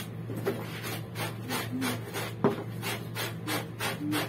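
Clothes being scrubbed by hand in a plastic basin, fabric rubbed against itself in a steady rhythm of about three strokes a second. There is a sharp tap about halfway through.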